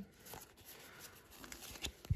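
Faint rustling and a few light ticks of Pokémon trading cards and foil booster packs being handled.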